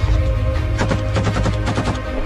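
Automatic small-arms fire: a rapid burst of about a dozen shots starting a little under a second in, over steady background music.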